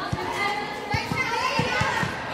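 Girls' voices calling out over a basketball game, with a basketball bouncing on a concrete court in several dull thuds.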